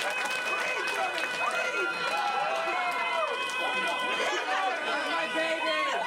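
A man's long wordless yell into a microphone through a PA system, over many audience voices cheering and screaming at once.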